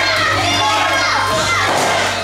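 A crowd with many children's voices shouting and calling out at once, over background music with a steady low bass.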